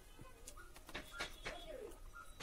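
A dove cooing faintly in the background: one low arching coo in the second half. Several soft clicks come before it.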